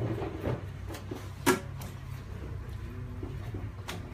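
Raw leg of lamb being handled and turned over on a wooden butcher's board: scattered small knocks, with a sharp knock about a second and a half in and another just before the end.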